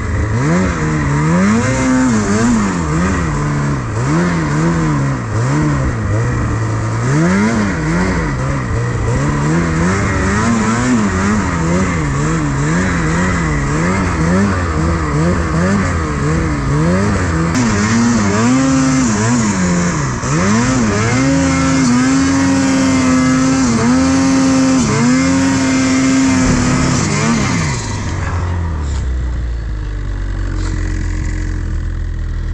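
Ski-Doo Freeride 850 Turbo snowmobile's two-stroke engine revving up and down again and again as the throttle is worked while pushing through deep, heavy snow. It holds high revs for several seconds near the end, then drops off.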